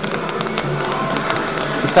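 Background music with guitar, playing steadily.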